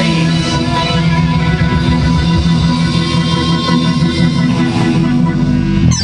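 Live rock band playing an instrumental passage on electric guitars and drums. A sharp hit comes right at the end.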